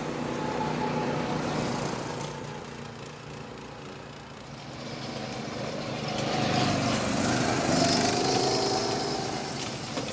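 Small go-kart engines running on a track, their pitch rising and falling as they speed up and slow down; the sound grows louder between about six and nine seconds in as a kart comes close, then falls away.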